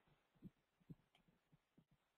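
Near silence: faint room tone with two brief, soft thumps, about half a second and a second in.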